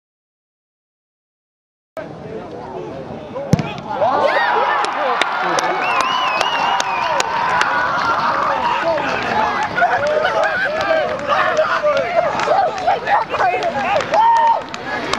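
About two seconds of dead silence, then football spectators shouting and cheering over a goal, with scattered handclaps. A single sharp knock comes about three and a half seconds in, and the many overlapping voices get loud just after it and stay loud.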